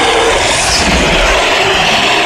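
Loud, continuous dinosaur roar sound effect: a rough, noisy growl with a faint wavering pitch.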